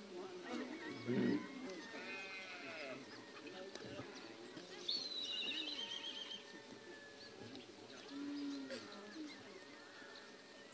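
Livestock camp ambience: farm animals calling, with bleats among them, over a background of people's voices. The loudest call comes about a second in, and a high, rapid trill comes about five seconds in.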